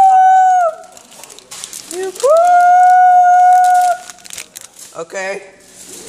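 A person's high-pitched, drawn-out 'aah' cries: a short one at the start and a long steady one of nearly two seconds in the middle, then a brief cry near the end. These are groans of effort and frustration at struggling to open a snack wrapper with one hand.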